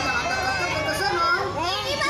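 Several voices talking loudly over one another, unintelligible.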